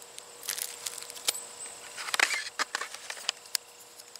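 Small clear plastic zip bag crinkling and rustling in the hands, with irregular light clicks from the metal split rings and clip inside it. The loudest crinkling comes about two seconds in.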